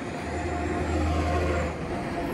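A motor vehicle's engine passing on the road: a low, steady hum with road noise that swells over most of the two seconds and eases off near the end.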